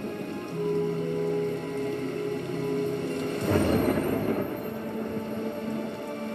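Film soundtrack of rainfall with held notes of background score over it; the rain noise swells louder about halfway through.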